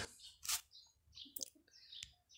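Quiet pause holding a few faint, high, short chirps and two soft clicks, about half a second and a second and a half in.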